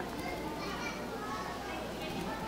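Indistinct chatter of many children in a hall, a steady murmur of overlapping young voices with no one voice standing out.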